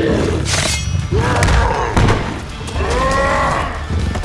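A gorilla's roars as designed for a fight scene: two long bellowing calls that rise then fall, about a second in and again near the end. Sharp hits from the struggle come between them, over a low rumble.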